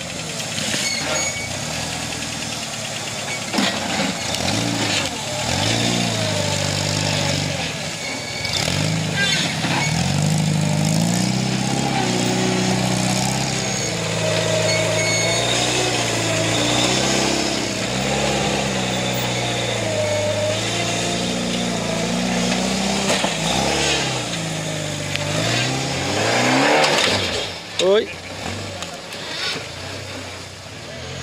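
Engines of off-road trial buggies revving up and down over and over as they are driven hard over obstacles, with a sharp rise to a loud peak near the end.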